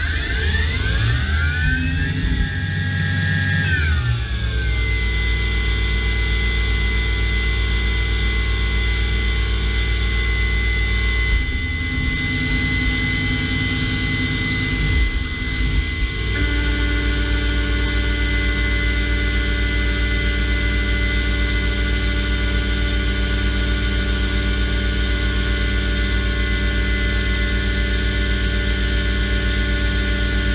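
CNC machining centre's spindle winding up with a changing whine over the first few seconds, then running at a steady high whine with a low hum beneath. About sixteen seconds in, coolant spray comes on and a further steady tone joins the whine.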